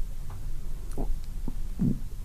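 A pause in speech: a low steady electrical hum with two faint, brief vocal murmurs, about a second in and near the end.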